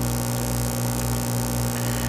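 Steady electrical mains hum, a low buzz with a ladder of evenly spaced overtones, holding an even level.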